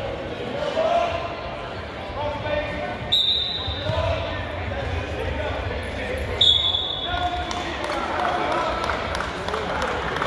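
Referee's whistle blown twice, two short high blasts about three seconds apart, over voices of spectators and coaches calling out in the gym.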